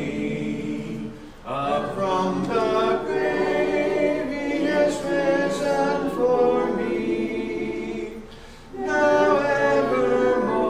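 Congregation singing a hymn a cappella, with no instruments, pausing briefly between phrases about a second in and again near the end.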